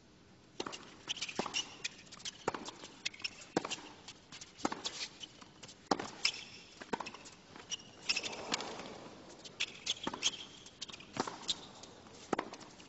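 A tennis rally on a hard court: sharp pops of racquet strings hitting the ball and the ball bouncing, roughly a second apart, with short high shoe squeaks on the court surface. A brief rush of crowd noise comes a little after the middle.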